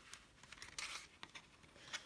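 Faint rustling and light clicks of a small paper notebook being handled, with a brief rustle about a second in and a page being turned near the end.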